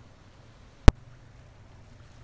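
A single sharp click just under a second in, over a faint steady low hum.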